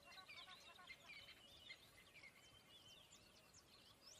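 Very faint birds chirping: many short, quick calls.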